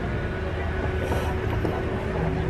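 Steady outdoor background: a low rumble with a faint steady hum running through it, and faint murmur of voices.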